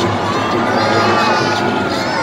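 Crowd cheering, with many children's high shouts and screams rising and falling in pitch.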